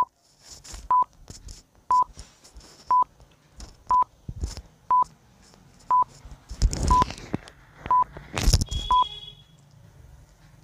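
Countdown timer sound effect: a short, single-pitched beep once a second, ten beeps in all. Brief bursts of hiss and rumble fall between the later beeps.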